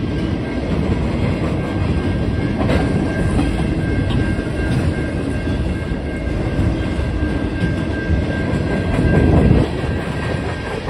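Freight cars of a passing Canadian National freight train rolling by: a steady rumble with clickety-clack of wheels over the rails. A faint steady high tone sits above the rumble, which swells briefly a little before the end.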